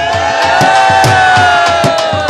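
Dhol drum beating with sparse strokes under a long, high held note lasting the whole two seconds, with the crowd cheering.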